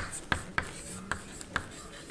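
Chalk writing on a blackboard: a series of short, sharp taps and scratches, about five strokes in the first second and a half, as letters are written.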